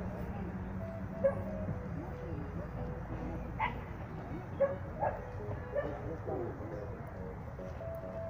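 A dog barking and yipping in several short, sharp calls, the loudest about a second in and a run of them in the middle, over a murmur of voices and steady outdoor background noise.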